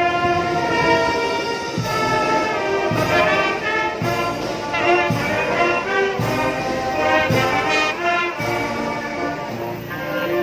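Marching band of brass, clarinets and drums playing a tune, the horns holding pitched notes over a drum beat about once a second.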